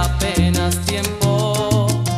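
Salsa romántica recording: a bass line and a quick, steady percussion beat under a sustained melody line.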